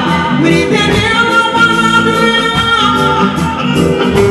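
Live band music with a woman singing lead through a PA, holding one long note in the middle, over drums keeping a steady beat.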